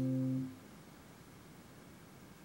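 Final chord of an acoustic guitar ringing steadily, then cut off abruptly about half a second in, leaving only faint room hiss.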